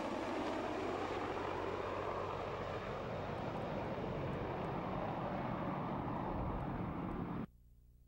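Large military transport helicopter flying past, with steady rotor and turbine noise. The sound cuts off suddenly near the end.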